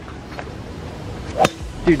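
A golf driver swung at a teed ball and missing it, with one short sharp sound from the club about one and a half seconds in.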